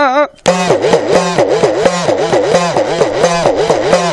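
Udukkai, a small laced hourglass hand drum, played in a fast rhythmic run of about four strokes a second, its pitch swooping up and down with each stroke as the lacing is squeezed. It starts about half a second in, right after a sung line breaks off.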